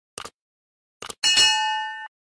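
Short clicks, then about a second in a bright bell-like ding that rings on with several clear tones and fades out, like an added chime sound effect.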